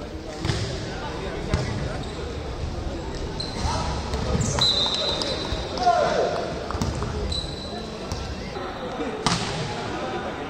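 Indoor volleyball play in a large echoing hall: sharp slaps of the ball being struck by hands, players shouting, and short blasts of the referee's whistle. The loudest slap comes near the end, as the next rally starts.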